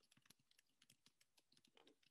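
Near silence with faint, irregular clicks of someone typing on a computer keyboard.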